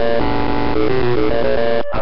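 A loud run of electronic tones stepping from pitch to pitch like a short tune, coming through a CB radio's speaker, with a brief dropout near the end.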